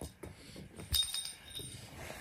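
Toy sound blocks being handled and stacked, with a few soft knocks. About a second in there is a short, bright clinking ring from one of the blocks.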